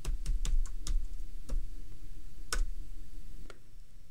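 Computer keyboard keys being typed: a string of separate clicks, quick in the first second and a half, then sparser.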